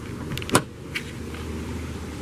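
Rear seat of a Jeep Wrangler being released and folded: a sharp click of the seat-back release latch about half a second in, then a softer knock, over a steady low hum.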